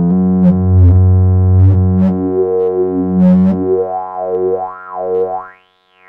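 Synthesizer bass patch played through the Maschine+ Sampler while the cutoff of a high-pass filter is swept, cutting out the low frequencies. Its bright peak sweeps up and down in pitch, and near the end the low end is gone and the sound drops almost to nothing.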